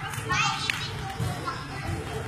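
Children's voices and shouts during play, with one short knock about two-thirds of a second in.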